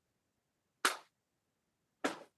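A short sharp noise about a second in that dies away within a quarter second, with a second one beginning right at the end.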